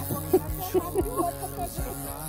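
Background music with a melodic vocal line and a steady low bass underneath.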